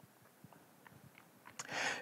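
Near silence with a few faint small clicks, then a short intake of breath near the end.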